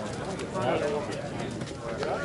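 Indistinct voices of players and spectators calling out around a softball field, with a few faint clicks.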